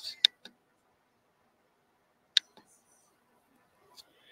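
A few short, sharp clicks against near silence: a loud one about a quarter second in, a louder one about two seconds later, and a couple of faint ones.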